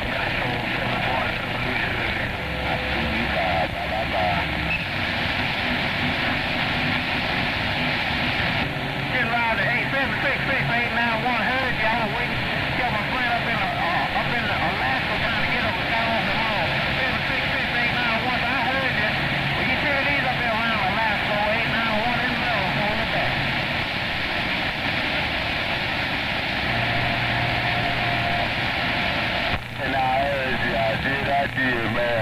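CB radio receiver tuned to 27.025 MHz hissing with band static, with faint, garbled voices of distant skip stations on single sideband wavering through the noise, thicker from about nine seconds in.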